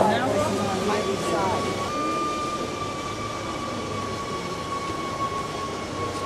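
A steady high tone that comes in within the first second and holds, drifting slightly lower in pitch, over a constant background murmur; voices are heard briefly at the start.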